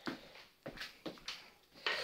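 Handling noise from a phone being moved about while it records: a few light knocks and rubs, then a louder scraping rustle near the end.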